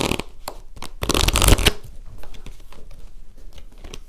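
A deck of tarot cards being handled and spread out on a cloth-covered table. There is a louder rush of cards about a second in, then many light flicks and clicks of cards.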